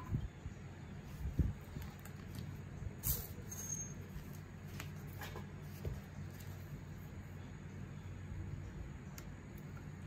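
A few short, scattered clicks and light knocks of metal engine parts and tools being handled, over a steady low hum.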